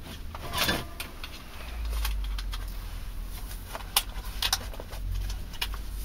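Scattered light clicks and rustles of a dust mask and ear defenders being handled and put on, over a low rumble.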